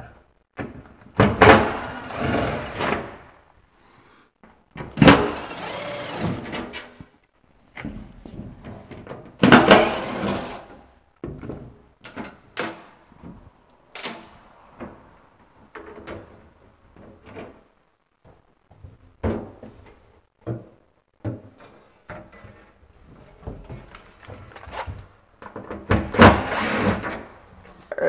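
Cordless impact driver with a Phillips bit removing the bolts from the angle irons that hold a platform lift's cabin wall panel, running in several bursts of a second or two. The bursts come about a second in, about five seconds in, about ten seconds in and near the end, with light knocks and clunks of the tool and metal panel in between.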